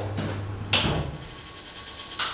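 A single sharp click about three-quarters of a second in, and a low steady hum fades out just after it.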